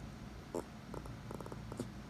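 A small dog making pig-like snorting grunts: several short bursts of quick pulses over a low rumble, his way of asking for the petting to go on.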